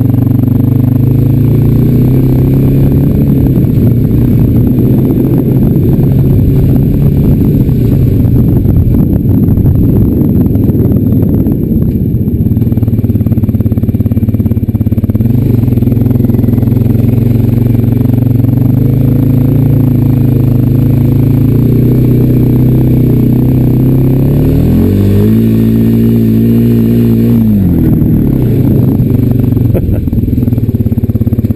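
Honda Rancher 420AT ATV's single-cylinder four-stroke engine running as the quad is ridden, its note rising and falling with the throttle. About 25 seconds in it revs up steeply, holds for a couple of seconds and drops back.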